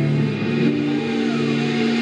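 Live rock band playing sustained, ringing guitar chords, the notes changing about two-thirds of a second in.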